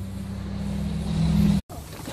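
A vehicle engine running steadily with a low hum, growing louder over about a second and a half, then cut off abruptly.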